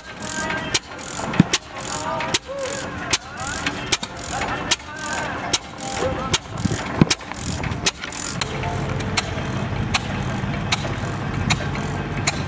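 Antique flywheel stationary gas engines running, a quick irregular series of sharp pops and clicks from their firing and valve gear. After about eight seconds this gives way to a steady low engine hum.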